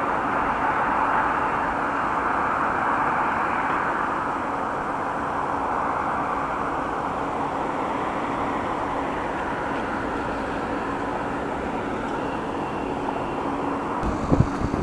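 Steady road traffic noise at a wide intersection, an even hiss of passing cars with a faint constant hum underneath.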